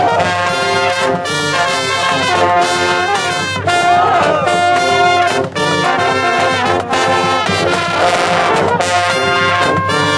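Drum and bugle corps playing live: a brass section of bugles and contrabass horns over marching drums, loud and continuous, with sliding brass notes about four and eight seconds in.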